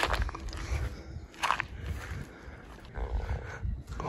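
Footsteps and rustling through dry grass and weeds, with dull thumps and a brief rasping noise about a second and a half in.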